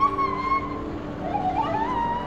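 A woman screaming during tandem skydiving freefall over the rush of wind. One drawn-out scream wavers at the start and a second one rises near the end.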